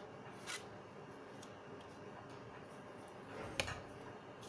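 Tarot cards being drawn and laid on a cloth-covered table: two short card clicks, a light one about half a second in and a louder one near the end, over a faint steady hiss.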